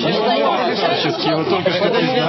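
Several people talking at once, their voices overlapping in crosstalk.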